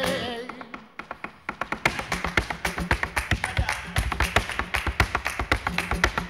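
Flamenco footwork (zapateado): the dancer's heeled shoes strike the stage floor in a fast, dense run of taps, many per second, building after a pause about a second in. The tail of a sung flamenco note fades out at the very start.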